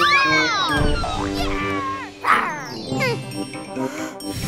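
Children's cartoon background music with high, squeaky gliding vocal cries from cartoon characters, with no words.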